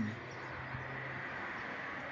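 Steady background ambience: a faint even hiss with a low steady hum underneath.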